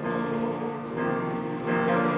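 Men's choir singing in harmony, holding chords that change about every half second.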